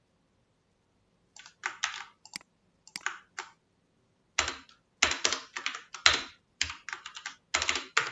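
Computer keyboard typing: a few scattered key clicks, then a quicker run of keystrokes in the second half.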